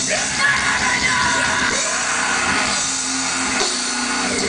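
A live rock band playing loudly, with vocals sung into microphones over guitar and drums.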